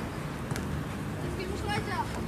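Distant shouts of young players, with a single sharp knock of the football being struck about half a second in.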